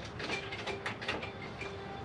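Irregular light metallic clicks and ticks as a bolt is screwed by hand through a transmission cooler's top mounting bracket and spacer.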